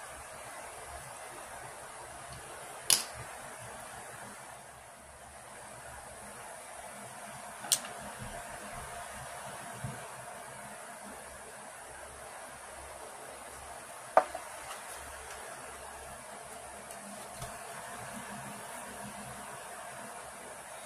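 Steady faint room hiss with a few sharp clicks, three of them clearly loudest, as small nail-stamping tools (metal stamping plate, stamper, polish bottle) are handled and set down on a table.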